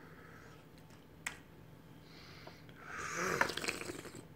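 A person slurping tea from a small tasting cup, a noisy sucking sip near the end. A single light click about a second in.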